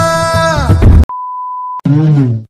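Music with a long held sung note cuts off abruptly about halfway through, followed by a steady single-pitch electronic beep lasting most of a second. A new pitched, voice-like sound starts right at the end.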